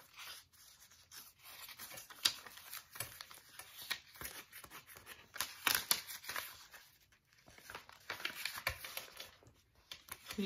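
Paper pages of a handmade junk journal being turned and leafed through by hand: an irregular run of rustles and flicks, the sharpest about two seconds in and again around the middle.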